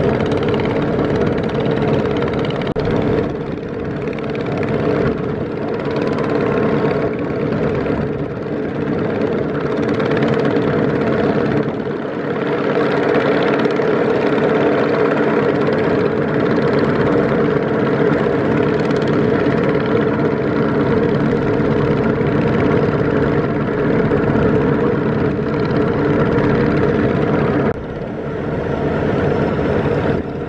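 A river trawler's engine running steadily under way, a loud, even drone with a strong hum, over the rush of water along the hull. The level drops briefly near the end.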